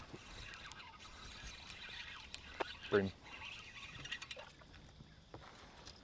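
Quiet outdoor ambience with a few faint small clicks, broken once about three seconds in by a man briefly saying "Bream."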